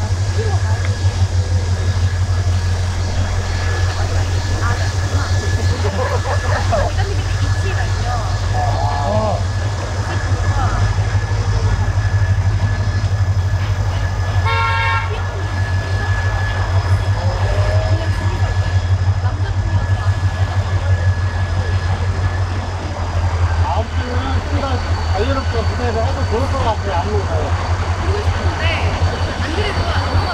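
Street ambience: a steady low hum runs under scattered voices in the background, and a horn gives one short toot about halfway through.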